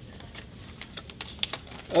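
Small paper slips being handled and unfolded close to a microphone: a string of light, irregular crackles and ticks.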